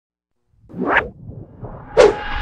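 Whoosh sound effect of an animated channel intro: silence, then a swelling whoosh about half a second in that peaks near one second and trails off into a low rumble, ending on a sharp hit.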